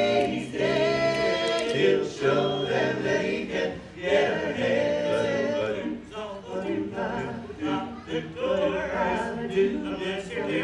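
Male barbershop quartet singing a cappella in close four-part harmony, in sung phrases with short breaks between them.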